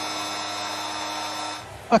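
Basketball arena game-clock horn sounding the end of the game: one steady buzzing tone that cuts off about a second and a half in.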